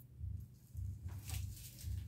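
Faint rustling of a bundle of dried pampas grass plumes being handled and shaken, over a low, uneven rumble.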